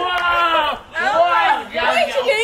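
Several voices exclaiming and shouting over one another in excited reaction, with long drawn-out high-pitched calls and a brief lull just before a second in.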